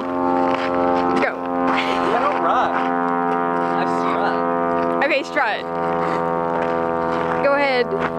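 A steady, unchanging droning tone with many overtones, held throughout, with voices calling and laughing over it now and then.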